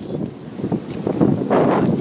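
Wind buffeting the microphone, a rough rumbling noise that grows louder in the second half.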